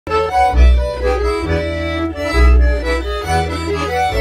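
Schwyzerörgeli (Swiss button accordion) playing a lively Ländler tune in an Appenzeller folk band, its reedy melody over deep bass notes that land about once a second.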